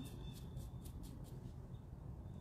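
Faint scratchy strokes of a small paintbrush, a quick run of about six a second in the first second or so, then only a low steady room hum.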